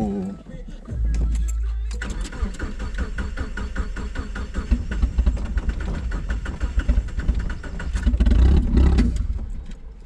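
Turbocharged 1.9-litre Mazda Miata four-cylinder engine cranking on the starter for about seven seconds without catching, heard from inside the cabin; its fuel line has come off, so it won't start.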